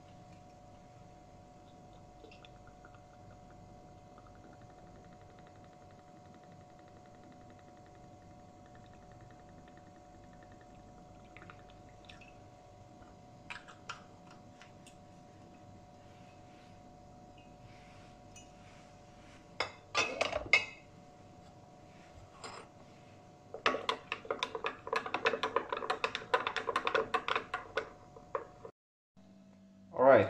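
Whiskey poured briefly into a glass of Milo about twenty seconds in, then a metal spoon clinking rapidly against the glass for about five seconds as the drink is stirred, cut off suddenly. Before that, only a faint steady hum with a few soft clicks of the bottle being handled.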